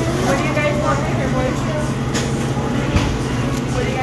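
Indoor shop ambience: faint voices over a steady low hum, with a couple of short knocks about two and three seconds in.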